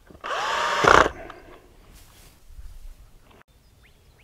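Cordless drill briefly driving a screw into aluminum wiggle wire track: one short run of about a second, the motor whine rising as it spins up, then stopping.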